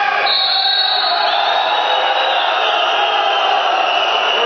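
Spectator crowd cheering and chanting, with a long high whistle tone cutting in at the start.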